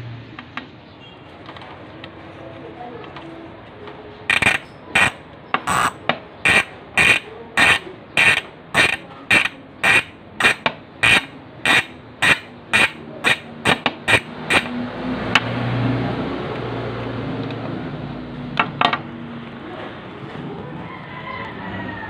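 Saturn Dione 2.0 bicycle rear hub's freehub ratcheting in short, loud bursts, about two a second, starting about four seconds in and stopping near fifteen seconds, as the hub is worked by hand. Its six pawls with three teeth each give the loud click it is known for.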